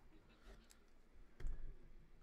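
A few faint clicks, then a sharper knock with a dull low thud about one and a half seconds in.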